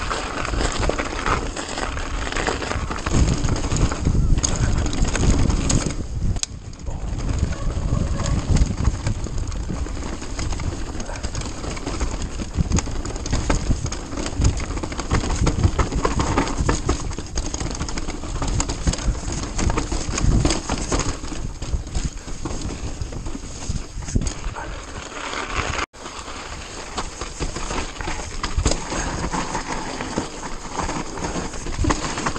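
Mountain bike riding fast down rough forest singletrack: wind rushing over the microphone, tyres running on dirt and snow, and the chain and frame rattling and knocking over bumps. The sound cuts out for an instant about 26 seconds in.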